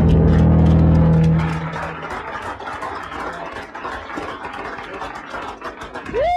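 A band's last chord of electric guitar and bass rings out loudly and stops about a second and a half in. Crowd clapping and cheering follows in a small club.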